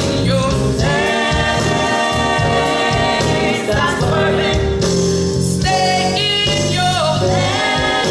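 A woman singing a gospel song live into a handheld microphone, holding long notes, with a live band accompanying her.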